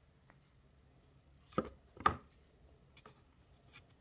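Two short knocks on the wooden model boat hull, about half a second apart, the second the louder, followed by a few faint ticks.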